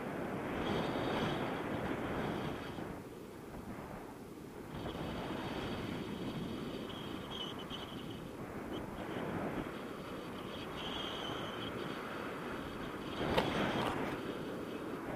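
Airflow buffeting the action camera's microphone in paraglider flight: a steady rushing of wind that swells and eases in gusts, with a brief sharp knock near the end.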